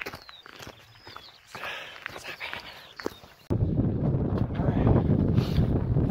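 Footsteps crunching on a gravel path, with a couple of faint high chirps, then about three and a half seconds in a sudden switch to loud wind buffeting the microphone.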